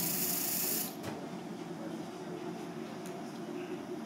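Aerosol vapocoolant spray hissing from a can onto the skin to chill it frosty before a needle goes in. The hiss cuts off sharply about a second in, leaving a low steady hum.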